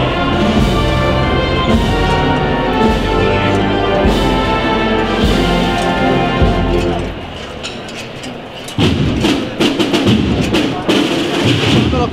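Procession band of brass and winds playing long sustained chords of a processional march, which ends about seven seconds in. After a short lull, a noisier mix of crowd voices and scattered knocks takes over.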